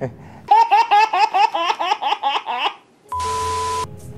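A burst of rapid, high-pitched laughter lasting about two seconds. Near the end comes a short, steady electronic tone over a hiss, under a second long.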